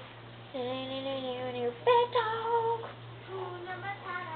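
Drawn-out wordless vocal sounds: one long wavering note, then a second, higher one that jumps in pitch about two seconds in, over a steady low hum.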